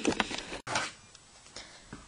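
A few quick clicks and a short rustle of objects being handled in the first half second, broken by a sudden cut, then a brief scuff and quiet room tone.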